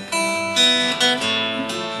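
Acoustic guitar strummed live, chords ringing with a fresh strum about every second.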